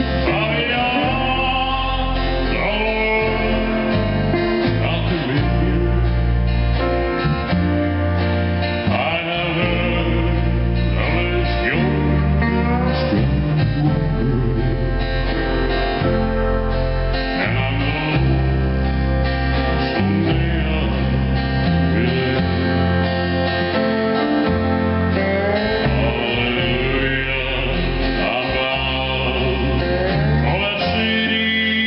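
Live country-gospel band: a man singing in English into a handheld microphone over guitar and upright double bass, with sustained bass notes under the vocal line.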